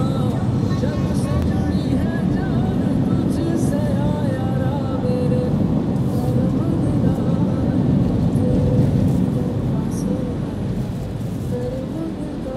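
Toyota car driving on a paved road, heard from inside the cabin: a steady rumble of engine and tyres, with a voice and music playing over it.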